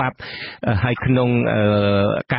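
A man's voice reading a Khmer radio news bulletin in long, drawn-out syllables, with a short break about half a second in.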